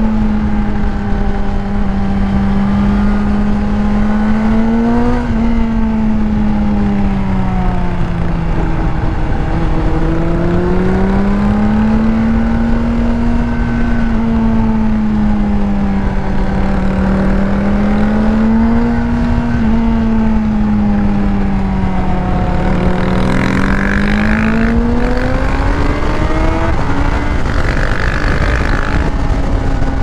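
Honda CBR600RR inline-four engine with a Yoshimura exhaust, running under steady part throttle, its pitch rising and falling gently through the curves, with wind noise underneath. Near the end it climbs in pitch, then drops suddenly.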